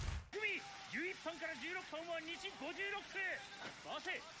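A loud burst of noise cuts off suddenly just after the start. Then a voice speaks Japanese dialogue quietly in an anime soundtrack, in short phrases that rise and fall.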